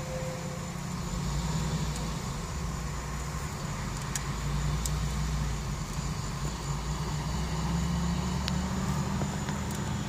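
Low, steady rumble of motor vehicles, swelling about a second in and again around five and eight seconds in.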